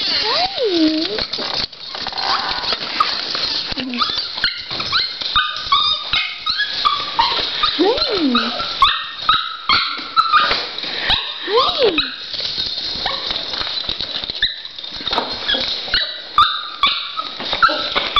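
Small Schnauzer–Yorkshire terrier mix dog yipping and whining in an excited greeting, with rapid, repeated high-pitched yips and three long whines that rise and fall in pitch.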